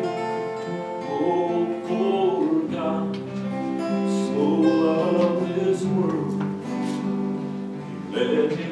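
A man singing solo, accompanying himself by strumming an acoustic guitar, with long held notes.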